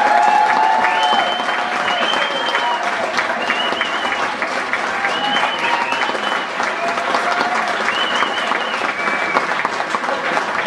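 Audience applauding and clapping steadily, with whistles and cheers over it.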